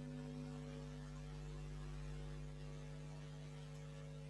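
Faint, steady electrical mains hum with several overtones over a light hiss.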